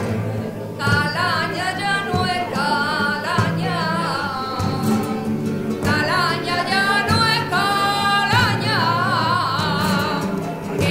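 Flamenco singing: a woman's voice in long, wavering, ornamented lines, entering about a second in, over two Spanish guitars.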